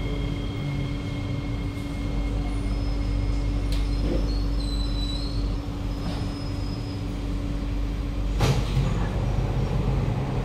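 Inside a C151B metro train car as it comes to a stop at a platform: a steady electrical hum and low rumble, with two high whine tones fading out in the first few seconds. About eight and a half seconds in there is a single sharp clunk as the doors start to open.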